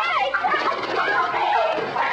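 Several chickens clucking and squawking, with many short overlapping calls.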